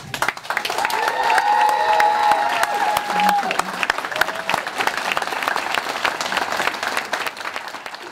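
A roomful of people applauding, dense steady clapping. A long held call from one voice rises over the clapping from about one to three and a half seconds in.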